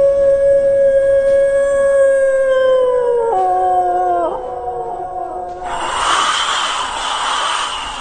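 A long, steady, howl-like vocal note held high, then dropping in pitch in two steps and fading out. About five and a half seconds in, a rushing, wind-like hiss takes over.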